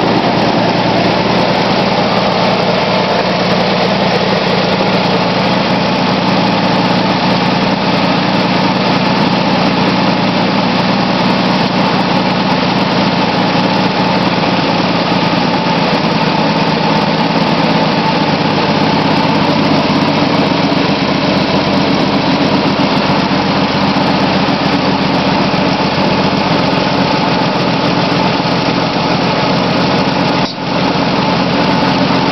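A Plymouth Valiant's slant-six engine, an inline six canted to one side, idling steadily, heard up close from the open engine bay.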